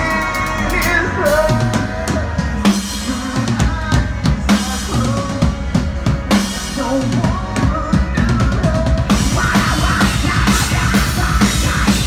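Live heavy band playing loud, led by the drum kit's bass drum and snare, with bass guitar and pitched instrument lines over it. The drumming gets faster and denser about nine seconds in.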